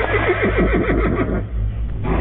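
A horse whinnying: one long neigh that wavers and falls in pitch, dying away after about a second and a half. A low, steady hum lies beneath it.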